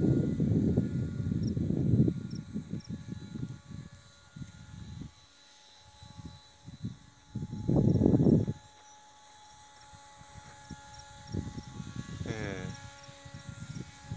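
Wind buffeting the microphone in gusts, a low rumble in the first two seconds and again about eight seconds in. Under it runs the faint steady whine of the distant RC paramotor trike's motor.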